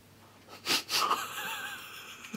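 A man's breathy, wheezing laugh: two short sharp breaths, then a drawn-out wheeze with a faint wavering squeak.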